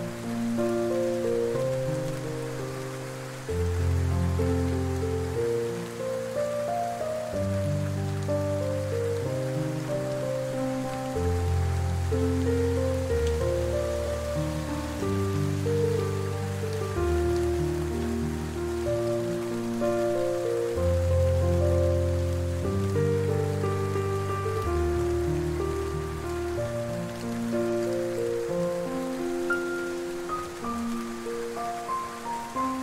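Soft, slow piano music with low bass notes held for a second or two each, mixed with a steady sound of rain.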